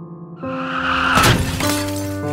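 Background music of sustained chords, with a crash sound effect over it: a noise that swells from about half a second in, peaks in a sharp hit a little after one second, then dies away. It marks a scooter hitting a pedestrian.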